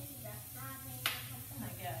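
A single sharp knock of a spoon against the frying pan about a second in, as peppers are scooped into the pan, over a steady low hum.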